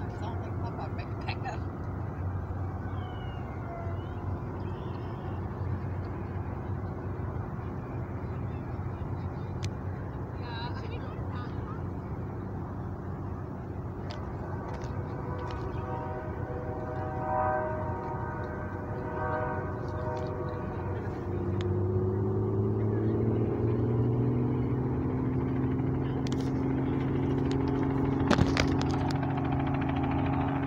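Helicopter engine starting up about two-thirds of the way in: a steady hum that rises slightly in pitch as it spins up, over outdoor background noise.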